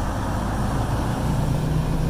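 Diesel engine of a Freightliner semi truck running as a steady low rumble. A low hum comes up about halfway through.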